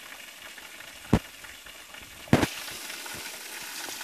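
Steady hiss of water falling at a waterfall, broken by a sharp click about a second in and a heavier knock a little after two seconds.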